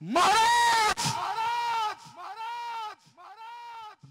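A voice chanting one long drawn-out syllable, loud and rising then falling in pitch. It comes back in repeats about once a second, each fainter than the last, like an echo.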